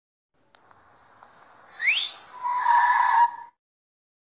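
A short sound effect: a quick rising whistle near the middle, followed by a held pitched call about a second long that cuts off suddenly.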